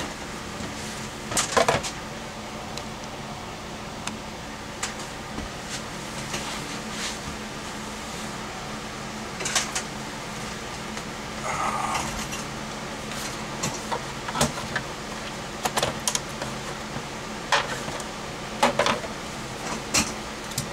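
Scattered knocks and clicks of a hard plastic caliper case being set down and opened on a workbench, over a steady low hum of room noise.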